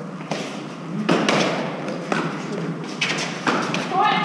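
An Eton Fives rally: several sharp knocks, about six in four seconds, as gloved hands strike the hard ball and it hits the concrete walls of the court, each knock briefly echoing off the walls.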